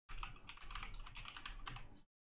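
Typing on a computer keyboard: a quick run of keystrokes entering a single word, about ten keys in under two seconds.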